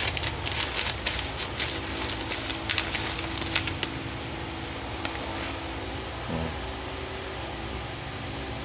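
Crinkly rustling and clicking of something being handled close to the microphone, thinning out about halfway through, over a steady hum with a few low steady tones.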